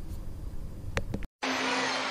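Handling noise as a hand covers the camera, with a sharp click about a second in. After a brief dropout it cuts to the steady noise of an arena crowd from a TV basketball broadcast.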